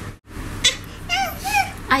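A toddler's high-pitched, whiny voice: a short hiss-like sound just over half a second in, then a few short squeaky syllables that rise and fall, after a brief break in the sound near the start.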